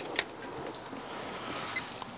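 Two sharp clicks of test leads and clips being handled, then a brief high beep near the end from the multifunction insulation and loop tester, over quiet room noise.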